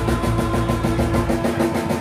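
A live rock band played close to the drum kit: fast, even drum strokes, about ten a second, over sustained electric guitar. The deep low end drops out about one and a half seconds in.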